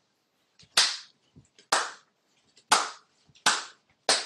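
One person clapping hands, four sharp single claps about a second apart.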